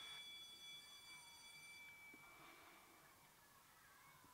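Near silence, with a faint high steady tone that fades away about halfway through.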